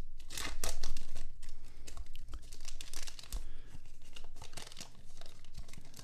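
Plastic wrapper of a 2023 Panini Select football card value pack being torn open and crinkled by hand: a run of irregular crackles and rips, loudest about a second in.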